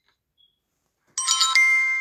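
Electronic chime: after about a second of near silence, a bright jingle of several ringing tones sounds and holds, beginning to fade at the end.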